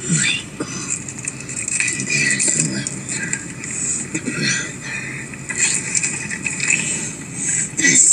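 Indistinct voices with no clear words, with a hissy, noisy background.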